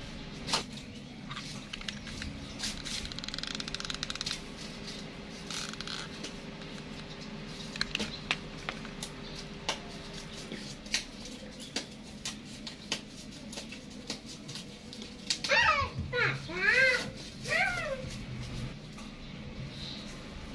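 Light clicks and taps of fingers handling a phone battery, thin wires and a micro-USB connector, over a faint steady hum in the first half. About three-quarters of the way through, a few short high-pitched calls rise and fall in the background and are the loudest sounds.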